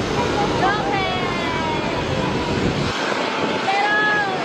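Jet airliner (Airbus A321neo) on its takeoff roll and rotation, its engines at takeoff power giving a steady rumble. The deep low end drops away abruptly about three seconds in, and voices talk over it throughout.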